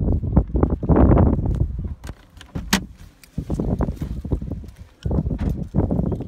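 Wind buffeting the microphone in gusts, dying away for a few seconds in the middle and then coming back. During the lull there are a few light clicks, with one sharp click a little before three seconds in.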